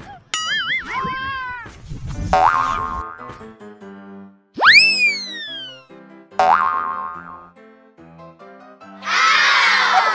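Edited-in cartoon sound effects over upbeat background music: a wobbling springy boing near the start, a sharp rising-then-falling swoop about halfway through, and a whoosh near the end.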